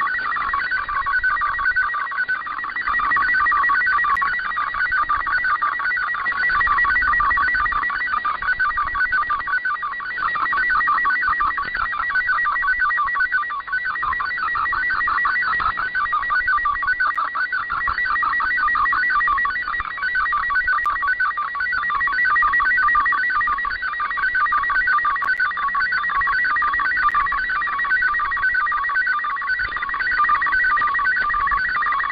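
MFSK64 digital data signal received over shortwave: a dense warble of rapidly stepping tones between about 1 and 2 kHz over a hiss of static, carrying an image being decoded.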